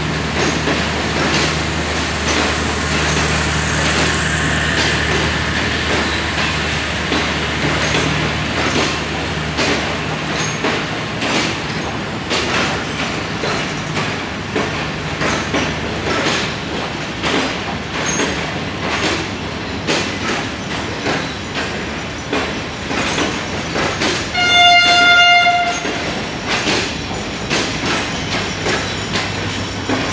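Passenger coaches of a Pakistan Railways express train rolling through the station, with a low engine hum for the first ten seconds and repeated clicks of wheels over rail joints. About 25 seconds in, a locomotive horn sounds one steady blast of a little over a second, the loudest sound here.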